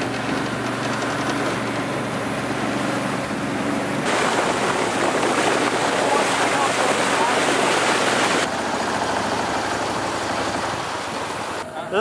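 Mud motor on a duck boat running under way through shallow water: a steady engine drone mixed with water and hull noise. The water noise grows louder and rougher from about four seconds in to about eight and a half seconds, starting and stopping abruptly.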